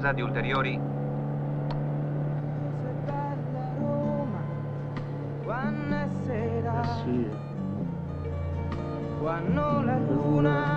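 Steady car engine hum heard from inside the cabin, under a car radio giving out scraps of voice and music, some of them gliding in pitch as the dial is tuned, most plainly about six seconds in.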